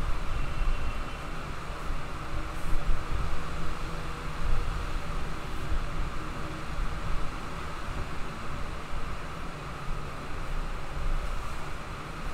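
Steady background noise: a low rumble and hiss of room tone that holds even throughout, with no distinct events.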